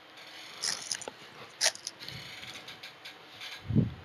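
Foil trading-card pack wrapper crinkling and tearing in hands, with brief sharp crackles about half a second in and a louder one about a second and a half in. Near the end comes a short low hum from a voice.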